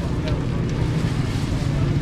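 Steady low rumble of wind on the microphone, with faint background voices.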